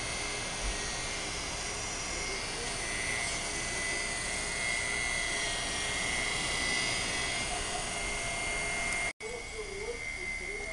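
Sole washing-machine induction motor running fast on a steady whine, wired with its run capacitor on the correct pin combination. The sound drops out for an instant near the end.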